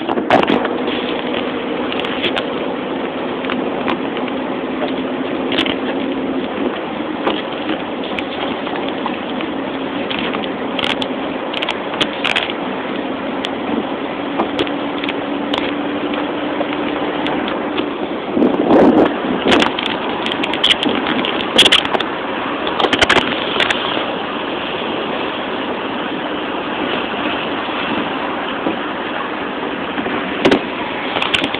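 Inside a car driving on a wet road in the rain: a steady hiss of tyres and rain, with a low hum that fades out a little past halfway. Scattered clicks and knocks run through it, with a busier patch of them soon after the hum fades.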